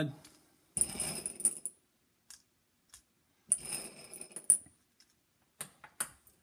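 Buckshot pellets being dropped into a shotshell wad: two short bursts of rattling clicks, about a second each, near the start and in the middle, with a few single clicks between and near the end.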